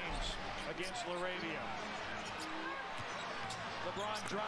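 Low-volume NBA game broadcast audio: a basketball dribbled on a hardwood court, with faint commentator speech over the arena background.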